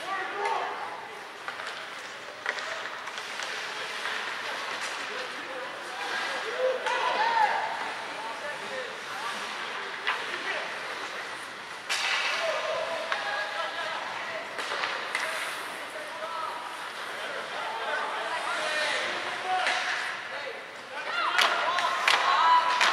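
Ice hockey arena during play: indistinct voices and shouts echoing in the rink, with occasional sharp knocks of puck and sticks, one loud knock about halfway through and a busier spell near the end.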